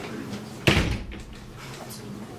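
A single sharp knock, a little under a second in, fading quickly, over a low steady background.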